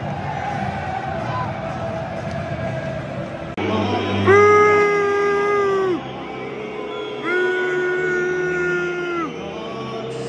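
Football stadium crowd din, then, after an abrupt change about three and a half seconds in, two long held notes sung or played over the crowd noise, the second slightly lower than the first.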